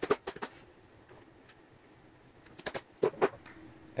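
Hammer tapping a steel pin punch to drive the lever pivot pin out of a Shimano 105 ST-5500 shift/brake lever. There is a quick run of light metallic taps at the start and a few more about three quarters of the way in.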